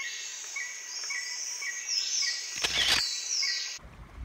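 Night insect chorus: crickets chirping about twice a second over a steady high buzz, with a brief rushing noise about two and a half seconds in. It all cuts off abruptly near the end.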